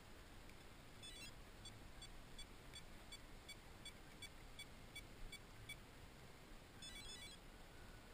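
Faint electronic beeps from a small device over quiet background hiss. A quick warbling run of beeps comes about a second in, then a steady series of short high beeps at about three a second for roughly four seconds, then another quick run near the end.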